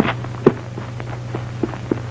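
Footsteps on a dirt road, about two a second, the first two the loudest, over a steady low hum on the film soundtrack.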